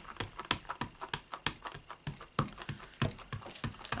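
A Crumb Cake ink pad being tapped again and again onto a clear-mounted Buffalo Check background stamp, giving a run of light plastic taps about three a second as the stamp is inked.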